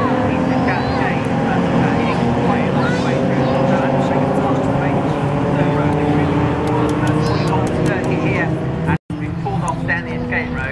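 A pack of BMW saloon race cars running close together on the opening lap, many engines at once giving a dense mix of overlapping engine notes at different pitches. The sound drops out abruptly for a moment about nine seconds in.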